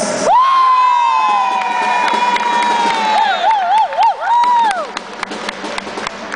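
A long, high-pitched cheer from one voice, held for about four and a half seconds, wobbling up and down near its end before breaking off, with scattered hand claps.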